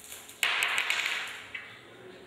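Monofilament line being drawn through glass beads, the beads scraping and clicking along the strand: a sudden rush of scraping noise about half a second in that fades over about a second.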